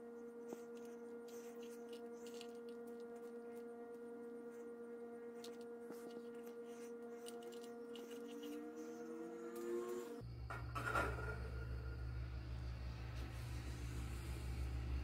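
A faint, steady hum at one constant pitch, with faint soft ticks from hands working sticky pollen paste. About ten seconds in, the hum gives way abruptly to a lower, rumbling hum.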